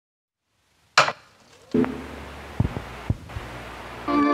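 Handling knocks: one sharp knock about a second in, then a click and a few lighter taps and clicks over a low hum.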